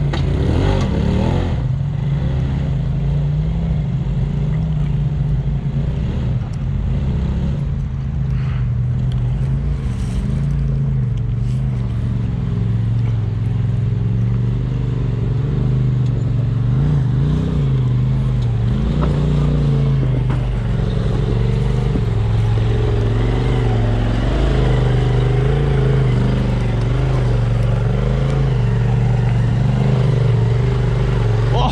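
Side-by-side UTV engine running steadily at low revs, with small rises and falls in pitch as it crawls over a rocky trail.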